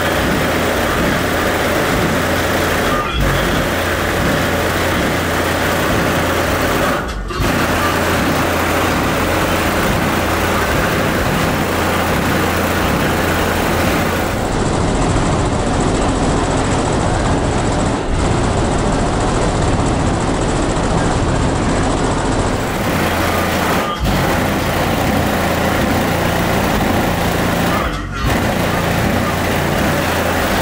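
Car audio system with trunk subwoofers in a Lincoln Town Car playing music at very high volume, knocking hard. A deep, dense bass line shifts every second or so, with a few brief breaks in the sound.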